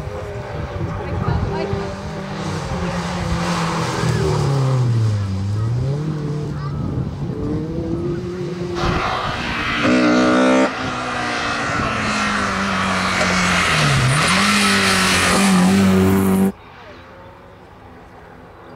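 Slalom cars' engines being driven hard through the cone gates, revving high, the note falling under braking and climbing again as they accelerate, twice over. The sound changes at joins between runs, getting louder about nine seconds in and dropping abruptly to a quieter engine shortly before the end.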